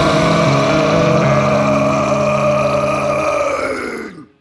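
The closing held chord of a gothic doom metal song, with one long sustained note ringing over the low chord, dying away quickly right at the end.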